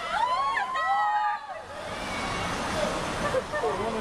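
Excited voices shouting in long calls that rise and fall in pitch, cheering a bungy jump, for about the first second and a half; then a steady rushing noise with softer voices underneath.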